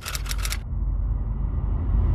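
Logo-intro sound effects: a fast run of sharp clicks in the first half second, then a deep bass rumble that swells steadily louder.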